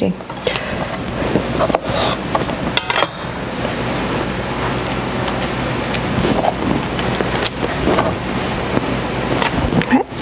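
A steady hiss throughout, with a few light taps and clinks from pieces of canned artichoke being set by hand on a parchment-lined metal baking sheet.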